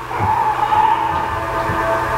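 Film trailer soundtrack: a held high drone with several low thuds beneath it.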